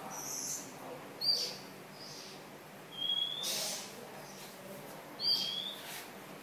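Bird chirping: short, high chirps about every second, the loudest a little over a second in and again near the end.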